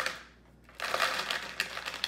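A plastic bag of small fishing weights crinkling as the weights are shaken out into a clear plastic tackle box, with a rattle of small clicks. The sound fades briefly, then starts again just under a second in.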